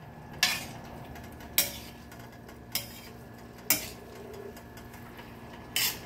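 Metal tongs clacking against a pan as they turn sliced eggplant, five sharp clacks roughly a second apart.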